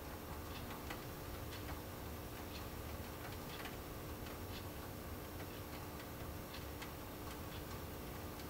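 Faint, irregular light clicks of a hook pick working the spool and mushroom pin tumblers of a Burg Wächter 217F brass padlock held under tension, a few ticks a second. A faint steady hum sits underneath.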